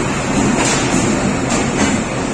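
A passenger train hauled by a ZCU-20 diesel-electric locomotive rolling slowly past along a station platform. There is a steady low rumble from the diesel locomotive as it goes by, and the coach wheels click a few times over the rail joints.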